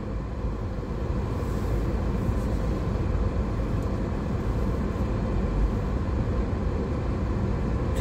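Car engine and road noise heard from inside the cabin as the car pulls out of a parking space and drives slowly, a steady low rumble that rises slightly about a second in.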